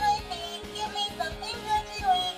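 Electronic sound chip in a toy Halloween ghost figure playing a short jingle of sung melody.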